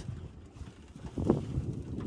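Wind on the microphone over the low running noise of an electric airboat moving across a lake, dropping quieter for a moment near the middle.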